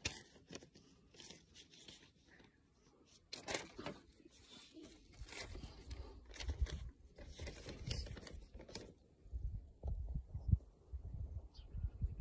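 Handling noise on a phone's microphone: irregular rustling and scraping, then low rumbling bursts in the last few seconds.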